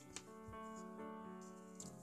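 Soft background piano music, slow sustained notes changing every half second or so, with one faint click near the start.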